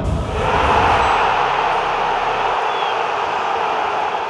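Loud, steady rushing noise, a sound effect under an animated logo sting, swelling up in the first half-second.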